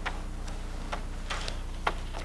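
Paper handling: a few short, sharp rustles and clicks of pages being turned and handled, one of them a longer rustle a little past the middle, over a steady low electrical hum.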